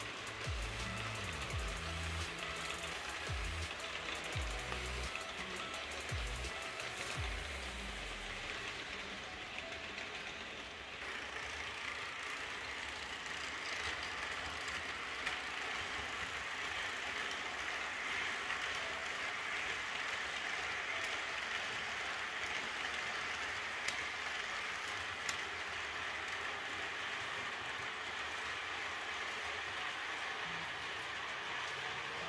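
Background music with a low bass line fades out about eight seconds in. It gives way to the steady rushing, rolling noise of model trains running on the layout's track.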